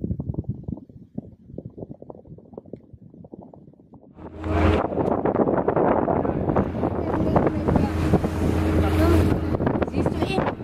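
Wind buffeting the microphone in faint gusts for about four seconds. Then, about four seconds in, a much louder motorboat engine takes over, running steadily with a rush of wind and water.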